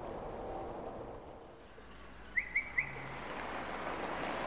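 A bird chirps three quick, rising notes over faint, steady outdoor ambience.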